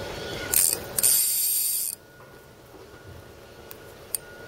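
Spinning fishing reel being worked: a brief high click about half a second in, then about a second of loud, even mechanical reel noise that stops sharply, then faint background.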